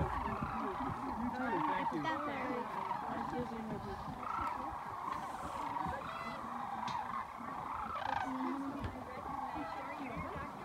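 A large flock of sandhill cranes calling: a dense, steady chorus of many overlapping calls.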